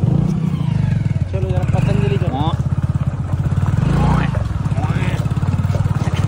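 Hero Splendor motorcycle's single-cylinder four-stroke engine running steadily under way, a fast even pulsing exhaust note, with a voice briefly over it.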